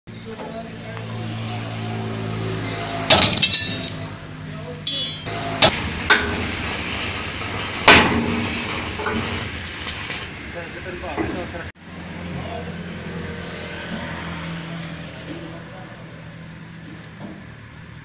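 A steady engine hum runs under several sharp metal strikes, hammer blows on steel, between about three and eight seconds in. The sound breaks off abruptly near the middle, and the hum then carries on.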